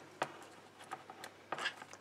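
Faint handling of a paper card: a few light taps and clicks and one brief rustle of cardstock as die-cut pieces are pressed into place.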